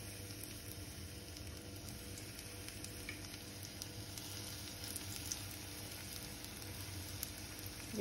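Bread squares shallow-frying in a little melted ghee in a small nonstick pan: a quiet, steady sizzle with a few small crackles.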